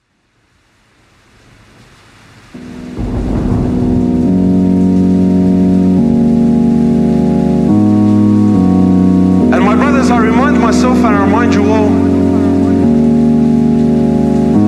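Opening of a vocals-only nasheed interlude: a hiss of rain fades in, then from about two and a half seconds a layered bed of sustained vocal chords enters, shifting chord every second or two. Near ten seconds a solo voice comes in over it with a highly ornamented, wavering melody.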